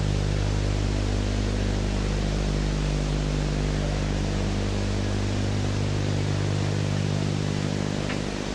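Steady hiss with a low electrical hum underneath, without music: the noise floor of an old analogue video recording.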